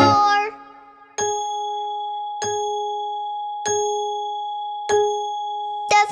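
A clock chime strikes four times, about a second and a quarter apart. Each strike rings on with a steady bell tone until the next one, marking four o'clock.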